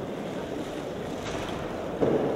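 Steady, even background noise of a crowded gymnasium between moves, a diffuse low rumble with no distinct event.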